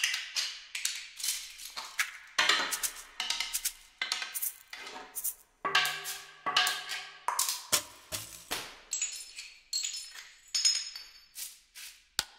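Sampled 'earth' percussion played one note at a time: a string of separate knocks and clicks from struck animal bones, shells, wood and rocks, each with a short ringing decay, about two to three a second.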